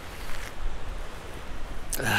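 Wind buffeting the microphone: a gusting low rumble under a steady hiss.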